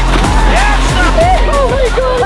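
Background music with a heavy bass line and a steady beat, with voices over it.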